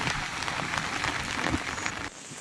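Heavy rain falling steadily, a dense even patter of drops.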